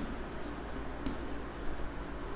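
Chalk writing on a blackboard: light scratches and taps of the chalk as the letters are written.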